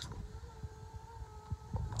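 Electric motor of a powered swivel driver's seat whining steadily as the seat turns, the pitch easing slightly lower about half a second in.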